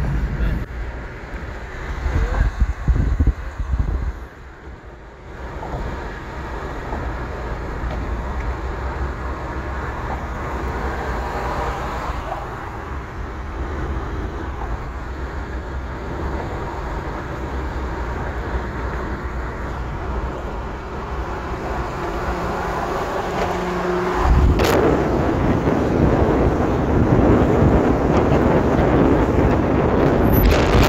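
Steady road and tyre noise inside a car moving at highway speed, with gusts of wind buffeting the microphone about two to four seconds in. About twenty-five seconds in, the rush grows clearly louder and stays that way.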